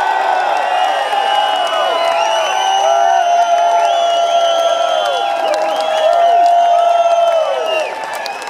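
Concert crowd cheering and whooping at the end of a live rock song, many overlapping drawn-out yells.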